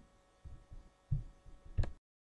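Three soft, low thumps, about two-thirds of a second apart, the last with a sharp click, over a faint steady hum.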